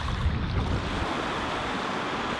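Shallow River Wye rushing over stones, a steady rushing noise. Wind buffets the microphone for about the first second.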